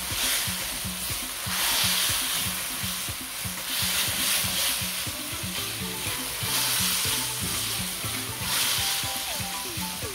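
Diced chicken thighs sizzling in hot oil and green curry paste in a wok as they are stirred. The sizzle swells and eases every couple of seconds.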